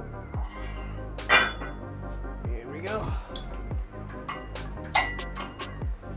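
Background music with a steady beat, over sharp metal clinks from a cable pulley's weights being changed. The loudest clink comes about a second in, with another about five seconds in.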